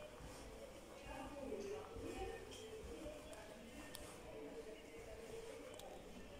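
Faint, indistinct talking in the background, with a couple of light clicks.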